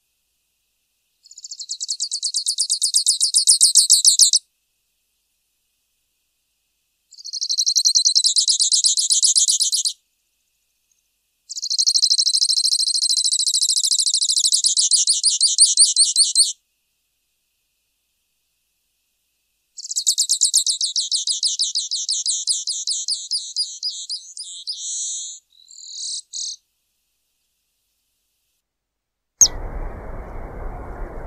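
Grassland yellow finch singing: four bursts of fast, high trilled song, each a few seconds long and separated by silent pauses. The last trill breaks into a few separate notes. Near the end there is a click, followed by a steady low hiss.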